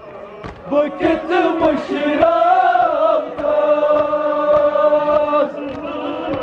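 Men's voices chanting a nawha, a Shia lament, in long held notes. Under the chant runs a recurring beat of hand strikes from matam, chest-beating. The chant drops out briefly at the start and picks up again about a second in.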